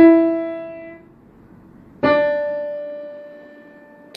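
A child playing single notes slowly on a Samick upright piano: two notes struck about two seconds apart, the second a little lower, each left to ring and fade.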